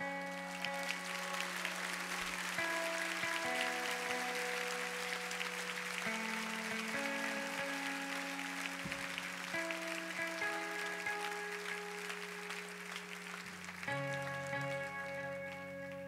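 Congregation applauding over soft, sustained band chords that change every second or two above a steady low held note. The clapping thins near the end as new chords come in.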